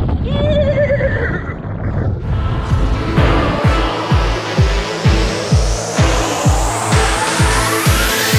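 A horse whinnies briefly at the start. Electronic music then builds under it, with a rising sweep and a kick drum beating about twice a second from midway.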